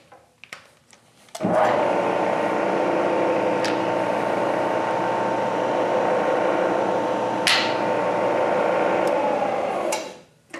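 Precision Matthews PM-935TV vertical milling machine's spindle motor and quill power-feed gearing starting about a second and a half in and running steadily with a whine. About six seconds later a sharp clack is heard as the automatic depth stop trips the power down-feed. The motor winds down near the end.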